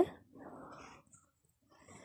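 A pause between a woman's spoken phrases: a faint, short breathy noise, then about a second of near silence.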